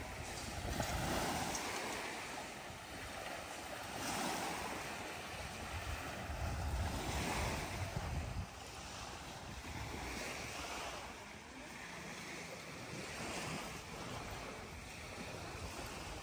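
Small sea waves washing onto a rocky shore, the wash swelling and fading every few seconds, with wind gusting on the microphone.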